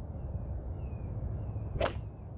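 A 4-iron swung once: a short swish and then a single sharp click as the clubface strikes a golf ball off an artificial turf mat, near the end.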